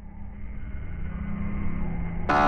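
A low, muffled rumbling drone with a steady hum, slowly growing louder: the opening swell of a logo sting, leading into its music.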